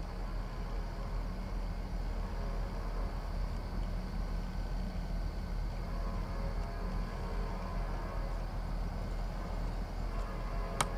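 Steady low rumble of diesel train locomotives, with a faint hum above it that grows a little stronger in the second half.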